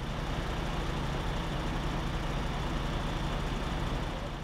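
Heavy diesel truck engine running steadily, a constant low drone.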